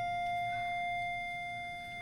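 A single steady mid-pitched tone with overtones, held for about two seconds and slowly fading before it stops.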